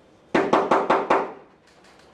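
Rapid knocking, about seven quick knocks in under a second, starting about a third of a second in: the knocking at the gate in the murder scene of Macbeth.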